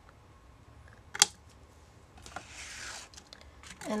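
Scissors snipping through a thin cardstock zigzag die-cut strip: one sharp snip about a second in, then a short soft rustle of paper.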